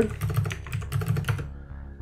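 Computer keyboard keys clicking in a quick run of keystrokes through the first second and a half, typing values into the scale fields, over a steady low hum.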